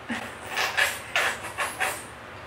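A nearly empty squeeze container of tinted sunscreen being squeezed, giving a string of short hissing spurts, about six in two seconds, as air and cream sputter out.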